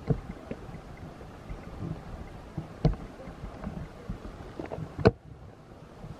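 Footsteps and handling knocks from walking a dirt forest trail with a handheld camera, irregular, the loudest thuds a little before halfway and just before the end, over a steady low background noise.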